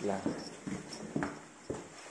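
Footsteps, about two steps a second, each a short thud.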